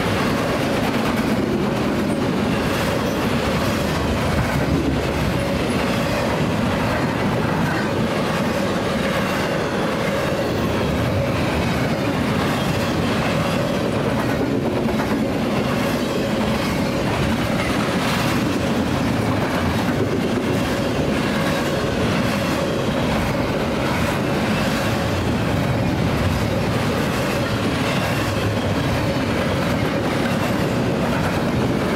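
Double-stack intermodal freight train's well cars rolling past: a steady rumble with the clickety-clack of steel wheels over the rail joints, and a thin steady high tone riding over it.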